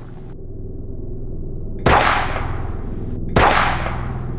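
Two loud gunshot-like bangs about a second and a half apart, each with a ringing tail, over a low hum that slowly swells.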